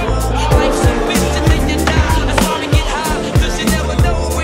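Music with a steady beat and deep bass notes that glide downward.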